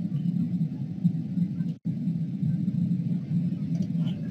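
Steady low background rumble on the recording, with a brief, complete dropout of the audio a little under two seconds in.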